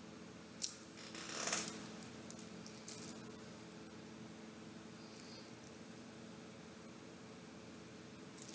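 A metal-band wristwatch being handled: a sharp click about half a second in, a brief rustle a second later, and another small click near three seconds, over faint steady room hum.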